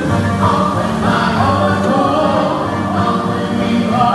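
A choir singing with instrumental accompaniment, the voices holding long notes over a steady low backing.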